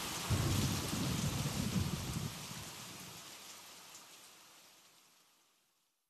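Steady rain with a low rumble of thunder in the first couple of seconds, the whole fading out to silence by about five seconds in.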